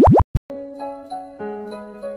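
Transition sound effect of quick rising bloops at the very start, cut off into a brief silence. About half a second in, soft melodic background music with held notes begins.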